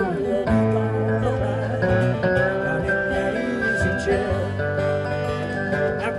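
Live lap-style slide guitar and strummed acoustic guitar playing an instrumental passage of a country-blues song, the slide notes gliding and bending over a steady rhythm.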